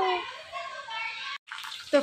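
A child's call fades into a steady hiss of falling rain; after a sudden break about one and a half seconds in, thin raw-banana slices sizzle in hot oil in a wok.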